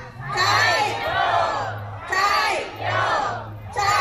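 A crowd shouting a cheer together, several long shouts in a row with short breaks between them.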